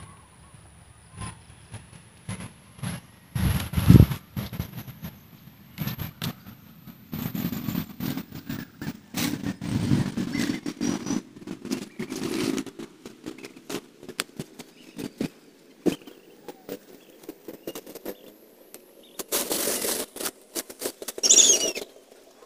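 Leaves and stems rustling and crackling as someone moves through a patch of bean plants, with a louder thump about four seconds in and a louder burst of rustling near the end. A low droning hum comes in about seven seconds in and holds steady.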